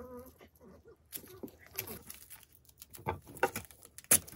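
Masking tape being pulled off and pressed onto a metal lamp: a brief squeaky tone at the start as the tape is stretched, then a run of short crackling rips and rubs as it is torn and smoothed down.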